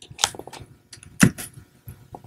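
Wrapping paper rustling and crinkling in a series of short rustles as it is folded and pressed around a gift box, the loudest a little over a second in.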